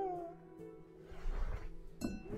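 A young man whimpering: a high, wavering cry that falls in pitch and trails off just after the start, then a softer breathy sob around the middle.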